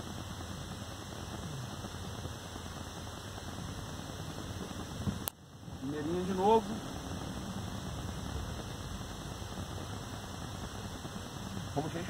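Steady low noise of a Volkswagen car idling in neutral, heard from inside the cabin. About five seconds in there is a sharp click and a brief dip in the sound, followed by a short rising voice-like sound.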